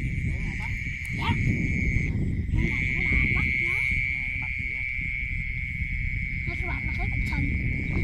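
A steady, high-pitched chorus of night-calling animals from a flooded field, breaking off for about half a second around two seconds in. Under it runs a low rumble of feet wading through shallow water, with faint voices.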